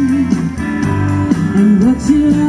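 Live rock band playing an instrumental passage: electric guitars over bass and drums, with cymbal strokes about four times a second. A guitar note slides upward near the end.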